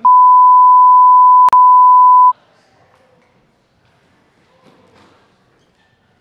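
Censor bleep: a loud, steady, high single-pitch beep lasting a little over two seconds, with a brief break about one and a half seconds in, laid over the speaker's words.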